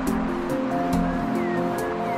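Calm, slow instrumental relaxation music of long held, overlapping notes over a soft, steady rushing wash.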